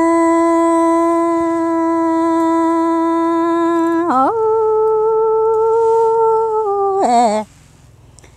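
A woman singing unaccompanied in the Hmong sung-poetry style. She holds one long, steady note for about four seconds, slides up to a higher note held for about three more, then ends with a wavering fall just past seven seconds in.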